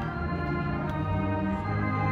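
Marching band's brass and winds playing slow, sustained chords.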